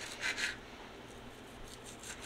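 A knife cutting through cooked steak on a wooden cutting board: two soft strokes in the first half second, then only faint rubbing.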